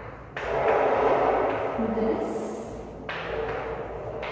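Chalk scraping on a blackboard as words are written by hand. It comes in two stretches, a long louder one from just after the start and a quieter one near the end.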